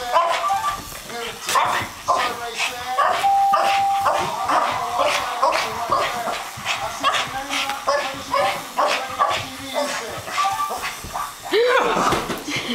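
Boston terrier barking excitedly in a rapid, unbroken string of short barks.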